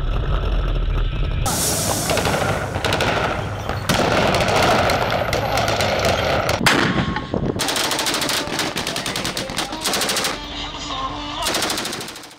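Bursts of automatic machine-gun fire, rapid repeated shots, with abrupt changes every few seconds as the combat clips cut. A heavy low rumble fills the first second and a half.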